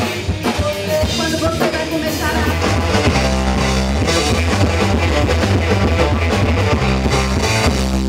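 Rock band playing on drum kit, electric guitar and bass guitar. About three seconds in, the music changes to a heavier part with long held low notes.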